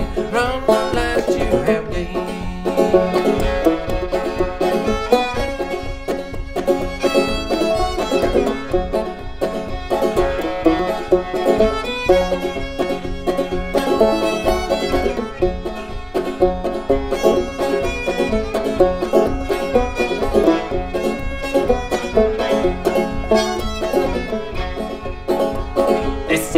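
Instrumental break in an old-time string-band song: banjo and fiddle playing over a steady beat, with no singing.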